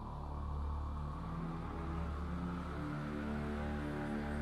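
Background music of slow, low held notes that shift about once a second, with no beat.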